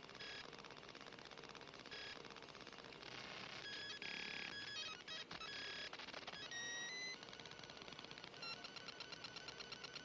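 Quiet electronic sound effects: dense clicking and ticking with short high beeps. A few rising beeps come about two-thirds of the way in, and a fast, regular ticking runs through the last second and a half.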